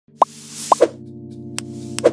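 Animated logo intro jingle: short rising plop sound effects, two within the first second, over a sustained synth chord, with a brief whoosh about half a second in and a sharp click near the end.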